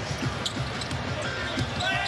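Basketball being dribbled on a hardwood arena court during live play, with a short sneaker squeak about one and a half seconds in.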